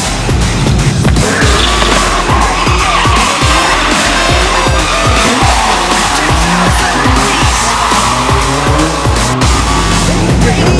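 Drift cars' engines revving hard with tyres squealing as they slide sideways, over music with a steady beat.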